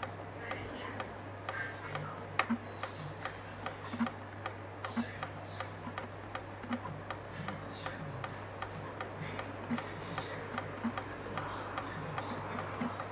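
Homemade pulse motor clicking steadily, about four sharp ticks a second, as its magnet disc spins past the reed switch and drive coil, over a steady low hum.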